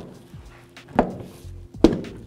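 A new plastic taillight housing on a 2008 Chevy Silverado being pushed onto its mounting anchors: two sharp knocks, about a second in and again near the end, as the housing is pressed into place to lock in.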